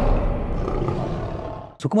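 A lion-roar sound effect from a logo sting, fading away over about a second and a half. A man starts speaking just before the end.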